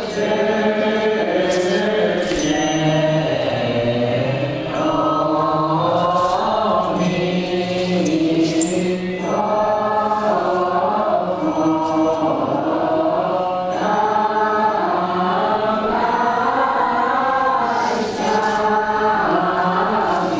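Chanting voices as music, held and slowly gliding notes that run on without a break.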